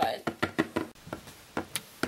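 Light knocks of a plastic Littlest Pet Shop figure tapped against a wooden tabletop as a hand walks it along: a quick run of taps in the first second, then a few more spaced out.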